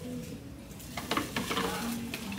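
Paper or light packaging rustling and crinkling as it is handled, with a cluster of sharp crackles about a second in.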